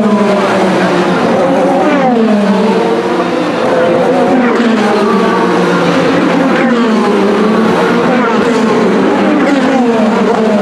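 IndyCars' twin-turbo V6 engines passing close by in a continuous stream, one car after another, each engine note falling in pitch as it goes past: the field running bunched up on a restart.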